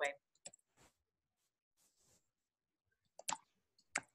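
Near silence on a video-call line, with a few faint short clicks; the loudest is a quick pair of clicks about three seconds in.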